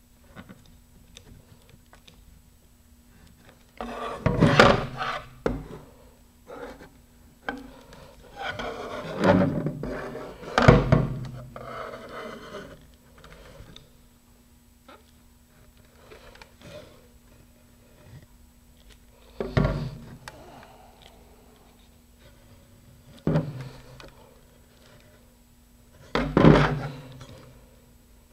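Handling noise from a fiberglass model rocket being turned and worked by gloved hands: a handful of separate knocks and rubbing scuffs against a tabletop, over a faint steady hum.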